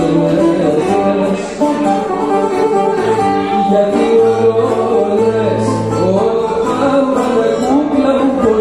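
Bouzouki and acoustic guitar playing a rebetiko song live together, with a man singing over the plucked strings.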